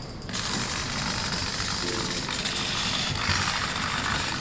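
Hobby servos of an EZ-Robot JD humanoid running as the robot moves from standing down into a sit, a steady mechanical buzz that starts just after the start.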